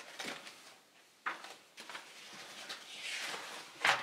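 Paper pages of a spiral-bound notebook being flipped by hand: a run of papery rustles and swishes. The loudest is a sharp flap near the end.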